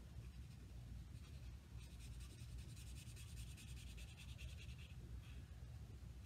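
Faint scratchy rubbing of a blender pen's tip on paper, wetting and spreading watercolor pencil color. It starts about two seconds in and stops about five seconds in, over a low steady hum.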